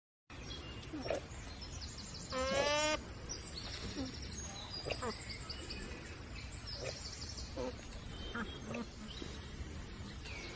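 Small birds chirping and calling now and then over a steady low background rumble. About two and a half seconds in comes one loud, wavering, voice-like call lasting under a second.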